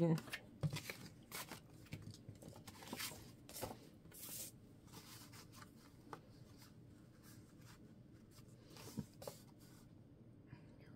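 Paper and cardstock being handled on a cutting mat: soft rustles and light taps, busier in the first half and sparser after.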